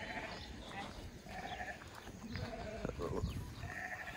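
Sheep and goats bleating faintly, several short calls spread across a few seconds.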